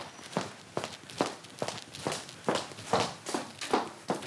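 Brisk footsteps on a wooden floor, an even pace of about two and a half steps a second.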